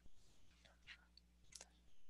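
Near silence, with a soft click at the start and a few faint, brief noises close to the microphone.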